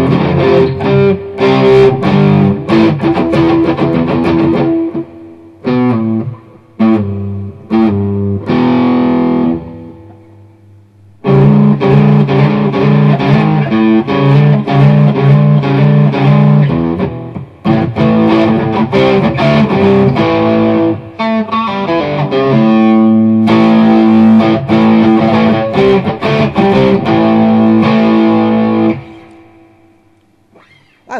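Amplified electric guitar playing a riff of chords and single notes. It thins to a few separate notes around six to ten seconds in and nearly stops. It then resumes with dense playing and stops shortly before the end.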